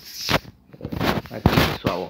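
Handling noise from a phone camera being moved about: a quick run of short rustling knocks and scrapes.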